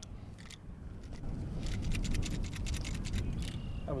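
Henry Axe .410 lever-action shotgun's lever and action being worked by hand: a quick run of metallic clicks and clacks. The action is being cycled again after it was not worked hard enough to feed a shell.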